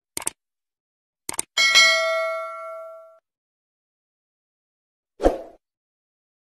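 Subscribe-button sound effects: a quick double mouse click, another pair of clicks about a second later, then a notification bell ding that rings out for about a second and a half. A short dull thump comes near the end.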